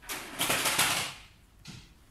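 A pen tip scratching quickly across paper in a loud burst of drawing strokes lasting about a second, with one shorter scratch near the end.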